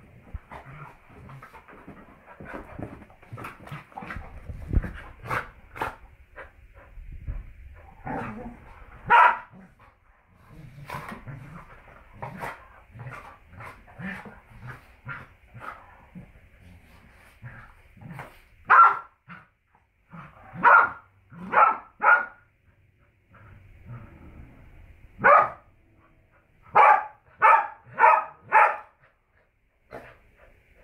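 Two dogs, a German Shorthaired Pointer and a Springer Spaniel, play-fighting: short barks over quieter rough vocal noises and scuffling in the first third, then louder barks, spaced a second or two apart, ending in a quick run of five.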